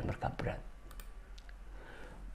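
A few short, faint clicks from a computer mouse or key as the presentation slide is advanced.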